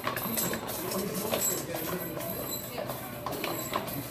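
Irregular light clicks and knocks, two or three a second, with a low voice murmuring in the first second.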